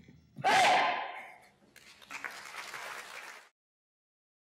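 A loud shout or whoop about half a second in, dying away over a second. Then a burst of audience applause and cheering, cut off suddenly before the end.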